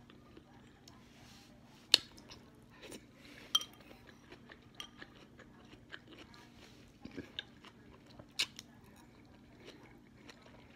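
Quiet chewing of noodles, with a few sharp clinks of a metal fork against a ceramic bowl, one of them ringing briefly.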